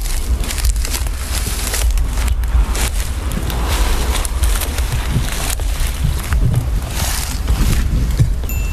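Wind buffeting a handheld camera's microphone, a loud, gusty low rumble with crackly rustling over it.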